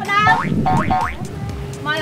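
Young people talking in Khmer over background music.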